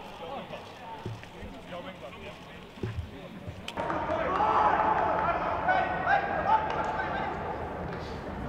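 Footballers' voices and shouts on the pitch of an empty stadium, with no crowd, and a few dull thuds in the first half. About four seconds in it jumps suddenly to louder match sound, with several players calling and shouting over one another.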